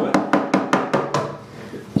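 Rapid sharp knocks on wood, about six in just over a second and one more near the end. The neck of a Kay upright bass is being tapped loose from its neck joint, which is so tight that the neck cannot be pulled out by hand.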